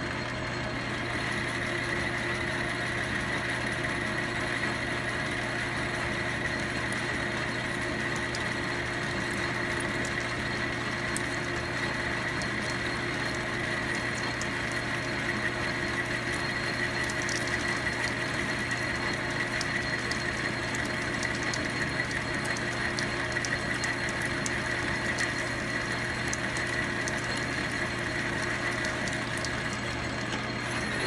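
Logan 10-inch lathe running steadily under power feed as a high-speed-steel boring bar cuts inside an aluminum bore, a constant hum with a steady higher ring that stays unchanged.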